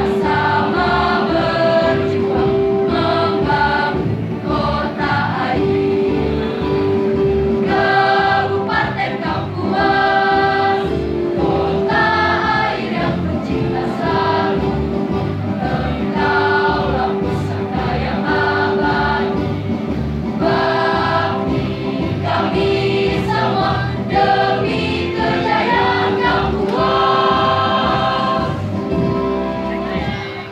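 A mixed school choir singing a march in unison through microphones and loudspeakers, over electronic keyboard accompaniment with a long held note underneath.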